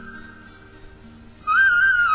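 Flute melody over soft, low, sustained accompanying notes. The flute falls silent for a moment and comes back in about one and a half seconds in.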